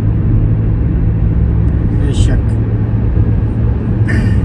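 Steady engine and road rumble of a moving car, heard from inside the cabin.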